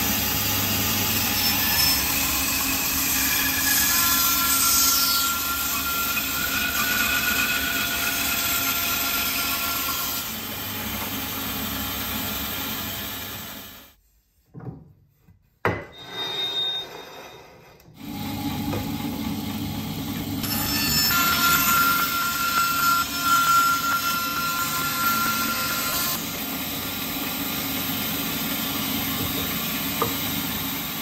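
Bandsaw running and ripping a yew log: a steady rasping saw noise with a thin whine that comes and goes. The sound drops out for a few seconds midway, then the saw runs and cuts again.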